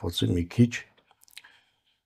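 A man speaking Armenian for under a second, then a short pause in which a few faint clicks are heard.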